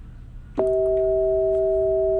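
Synthesizer keyboard sounding two held notes, an E and a G, as two pure steady tones that start together just over half a second in and sustain unchanged.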